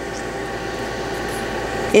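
Coarse-grit nail file rasping against the edge of a fingernail, filing off the excess of a vinyl nail wrap: a steady scratchy hiss.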